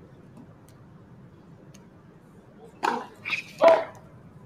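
Three short, loud calls in quick succession near the end, each about a fifth of a second long and spaced under half a second apart, the last the loudest, over a faint steady background.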